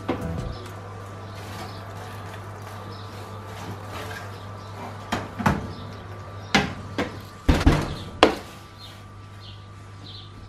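An oven door shut at the start, then a steady low hum, and a run of sharp metal clicks and knocks from about five seconds in as a metal baking tray is slid out along the oven rack and set down.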